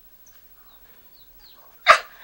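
Four faint, short, high peeps from chicks scratching about in the yard, spread across a near-quiet pause. Near the end a man bursts into a sudden loud laugh.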